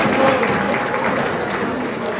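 Audience applause, many hands clapping, gradually fading.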